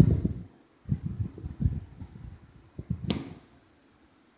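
Handling noise from a phone held and moved in the hand: low thumps and rubbing, with one sharp click about three seconds in.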